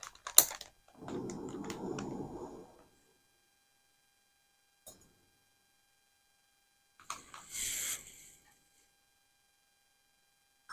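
Handling noises while a small backpacking stove is set up on its gas canister and a stainless steel cup is put on it: sharp metal clicks at the start, about two seconds of scraping, a single click around five seconds in, and a brief hissy rustle near the end.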